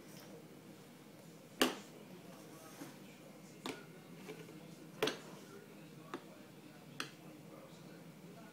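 A baby's hand slapping and knocking on a plastic high-chair tray and food bowl: five sharp taps one to two seconds apart, the first the loudest.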